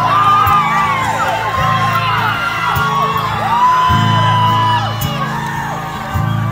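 Instrumental intro of a live song played as low sustained chords, with the crowd whooping and cheering over it.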